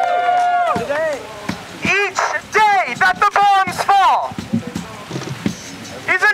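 A single voice shouting through a megaphone. It starts with a long held call that trails off, then gives short shouted phrases, and the words are not clear.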